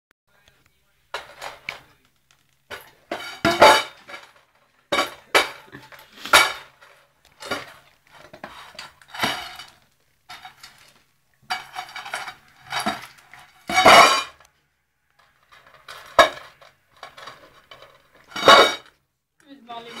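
Dry dog kibble rattling and clattering in a stainless steel dog bowl as a small child's hand stirs and scoops through it, in irregular bursts about once a second.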